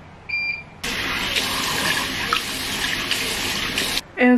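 A Bosch front-loading washing machine gives one short high beep as its control panel is pressed, then, just under a second in, water starts rushing in steadily as the machine begins filling for a wash.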